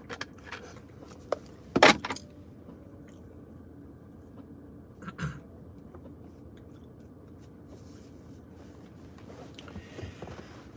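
Small handling noises from a plastic drink bottle being capped after a sip: a few light clicks in the first second, then a louder short knock about two seconds in. Another brief sound comes around five seconds in, over a faint steady low hum.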